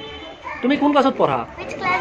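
A young girl's voice speaking a short phrase, about a second long.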